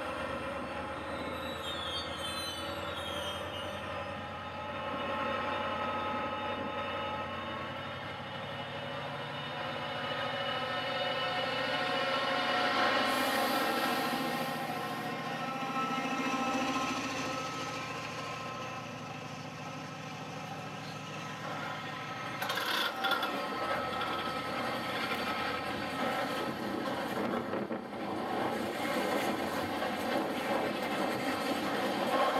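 Direct Rail Services Class 68 diesel-electric locomotive, with its Caterpillar V16 diesel, running past as it hauls empty intermodal container flat wagons, the engine note over the rumble and clatter of the wagons. The sound grows louder through the middle and changes abruptly about two-thirds through, when the locomotive is approaching head-on.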